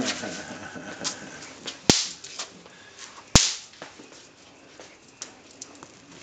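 Throw-down snap poppers (bang snaps) going off on concrete: two sharp cracks about a second and a half apart, with a few fainter clicks between them.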